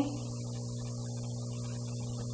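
Steady low electrical mains hum with a few higher overtones, picked up through the microphone and sound system.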